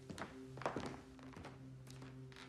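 Film score holding a steady low chord, with several sharp knocks over it; the loudest comes a little over half a second in.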